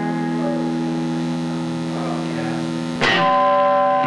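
Live rock band music on electric guitar: a chord rings out and is held, then a louder new chord is struck about three seconds in.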